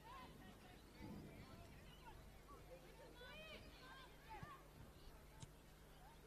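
Near silence: faint distant shouts and calls of footballers on the pitch over a steady low hum, with a couple of short knocks near the end.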